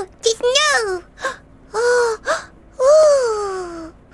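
A Teletubby character's high, sing-song voice making a string of wordless calls that glide up and down in pitch, ending with a long, slowly falling call.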